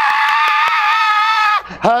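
A man's long, high-pitched falsetto scream held at a steady pitch and stopping shortly before the end. It imitates the excited squeal of a thrilled game-show contestant.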